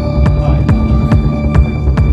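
Electronic dance music from a DJ set: a steady kick drum a little over two beats a second under held bass and synth tones.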